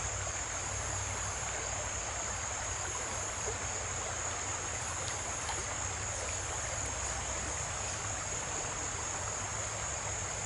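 Shallow creek water running steadily over a riffle, with a constant high-pitched chorus of insects such as crickets shrilling over it.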